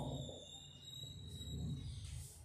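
Marker writing on a whiteboard, heard faintly as a thin, slightly rising high squeak over a low steady room hum.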